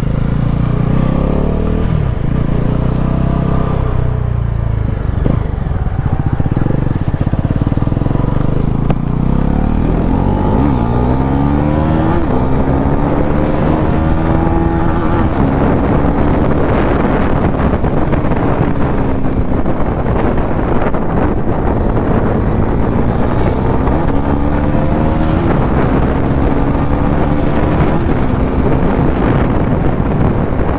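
Bajaj Pulsar NS400Z's single-cylinder engine pulling hard at speed, its pitch climbing and falling back several times as the rider works the throttle and gears, under heavy wind rushing on the microphone.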